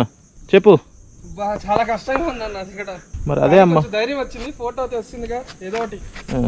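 Insects buzzing in the scrub: a steady, high-pitched drone that carries on without a break.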